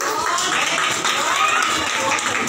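A small audience in a hall clapping, with overlapping voices.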